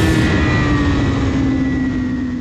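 A loud engine drone over a rushing noise, its pitch sliding slowly and steadily downward as it grows slightly quieter.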